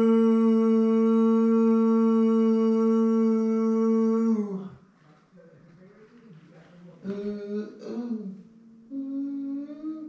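A long held background-vocal "ooh" sung on one steady pitch. It ends about four seconds in with a slight dip in pitch. Shorter, quieter vocal phrases follow near the end.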